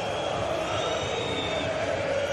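Steady crowd noise from the stands of a football stadium.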